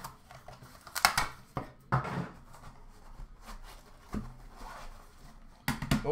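Hands handling an opened hockey card hobby box and its foam insert: a scattering of sharp clicks and knocks with soft handling noise between them.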